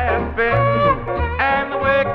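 Country band music from a 1957 radio transcription disc: a steady bass line under a lead line that slides and bends between held notes.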